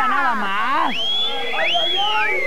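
Several people's voices calling out at once in long, high cries that rise and fall and overlap.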